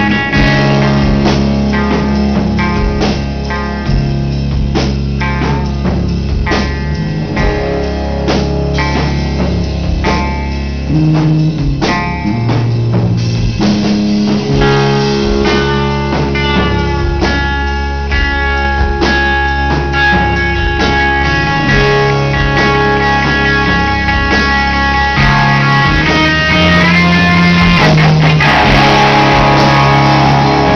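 Live rock band playing an instrumental passage: guitar lines over bass and drum kit, growing louder and fuller in the last few seconds.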